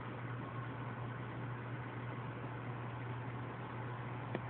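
Steady low hum with an even hiss, the sound of aquarium equipment running.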